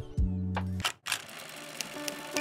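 Background music stops abruptly just before the middle, then after a short gap a quieter bed comes back with a few faint clicks, a transition sound effect under a title card.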